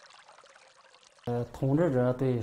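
Faint trickle of flowing water, then a little past halfway a man starts speaking in Chinese.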